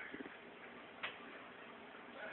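Quiet room tone with one sharp, faint click about a second in.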